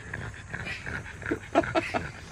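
French bulldog panting with its mouth open, with a few louder breaths in the second half.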